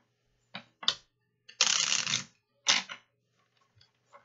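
A deck of reading cards being shuffled by hand: two short snaps, then a longer riffling rustle about a second and a half in, and one more snap near three seconds.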